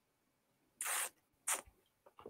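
Whisky sipped from a glass with a slurp that draws air in over the liquid, an airy hiss about a second in, then a second, shorter slurp half a second later.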